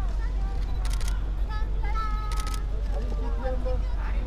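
Camera shutters firing in two rapid bursts, about a second in and again a little past two seconds, over high voices calling out and a steady low rumble on the microphone.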